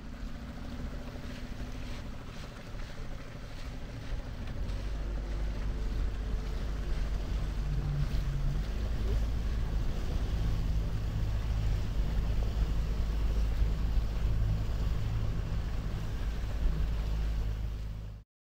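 Wind rumbling on the microphone over open sea, with water noise and the low, steady hum of a motorboat's outboard engine, growing louder over the first several seconds.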